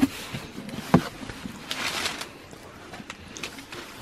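Crumpled kraft packing paper rustling and crinkling as hands dig through a cardboard box, with a couple of sharp clicks from the box, one at the start and one about a second in.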